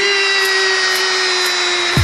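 One steady, buzzy electronic note held for about two seconds in the dance music track, with the beat dropped out underneath; it slides down in pitch as it ends.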